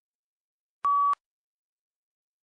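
A single short electronic beep, one steady tone that starts and stops abruptly, signalling that answer recording has begun in a PTE-style speaking test.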